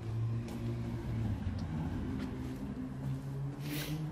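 A low engine hum, wavering in pitch, with a short hiss near the end.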